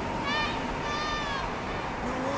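A girl's two high-pitched cries, a short one and then a longer one that falls at its end, over wind and surf noise.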